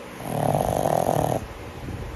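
A sleeping pug snoring: one loud, fluttering snore about a second long that starts just after the beginning and stops abruptly.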